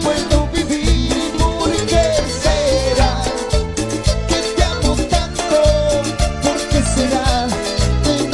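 Live cumbia band playing an instrumental passage: a melody line wanders over a steady, dense beat of congas, drum kit and a metal shaker, with electric guitar and keyboard.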